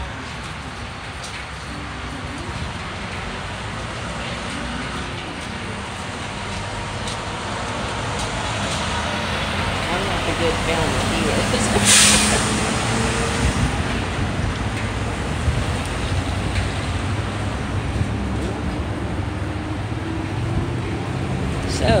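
Road traffic: vehicles and trucks running past, growing slowly louder, with one short, sharp hiss about halfway through.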